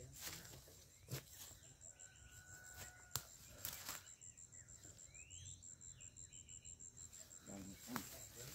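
Near silence: faint outdoor ambience with a steady, high-pitched pulsing trill typical of an insect, and a few faint clicks.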